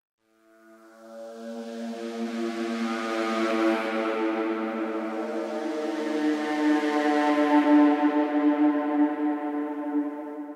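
Ambient synthesizer sound effect from Analog Lab playing two held notes as a background pad: a rich sustained tone that swells in slowly from silence and holds steady, with a faint airy hiss on top that fades away.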